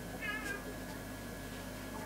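Felt-tip marker tip squeaking against paper during colouring strokes: one brief, wavering high squeak a quarter of a second in.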